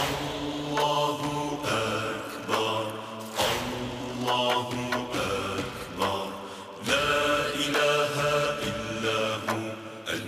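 Islamic devotional chanting on the soundtrack, sung voices in repeated phrases, starting abruptly just as the previous track has faded out.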